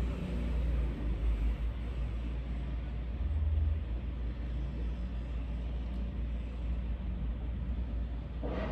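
Low, steady background rumble with a faint hiss, swelling briefly about halfway through.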